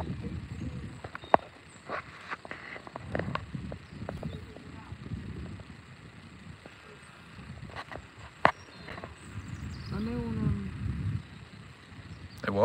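Low, uneven rumbling on a handheld phone microphone, with a few sharp clicks and a brief voice sound about ten seconds in.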